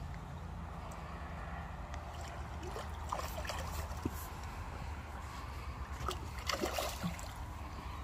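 Outdoor background: a steady low rumble with faint murmured voices around the middle and again near the end.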